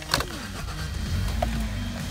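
Hyundai Sonata engine being started with the key: a click as the key turns, a brief starter crank, then the engine catching and settling into a steady low idle.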